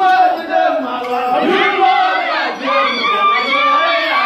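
Group of men and women chanting together in a Dinka dance song, with shouted calls in the first half giving way to held, sung notes near the end.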